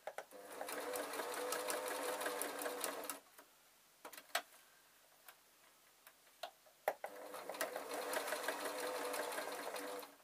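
Domestic electric sewing machine stitching through two fabric layers with wadding between, in two runs of about three seconds each. In the pause between come a few sharp clicks as the needle is left down and the presser foot lifted to pivot at a point.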